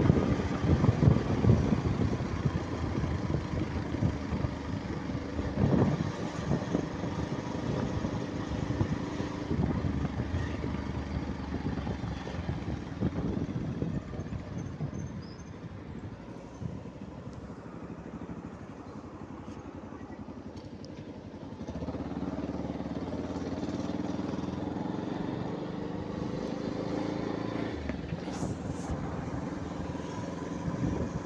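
Motorcycle running while being ridden, with wind buffeting the microphone. The engine note becomes steadier and a little louder about three quarters of the way through.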